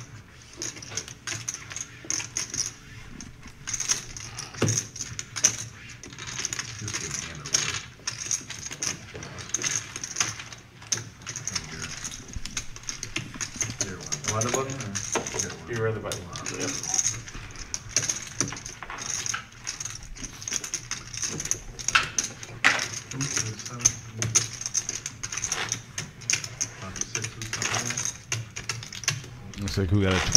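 Poker chips clicking in frequent, irregular short clicks as players riffle and handle their stacks, with low voices in the background.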